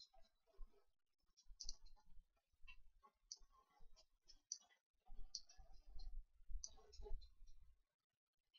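Faint computer mouse clicks, about eight of them at irregular intervals, from a mouse used to move vertices in a 3D modelling program, with a faint low rumble in the second half.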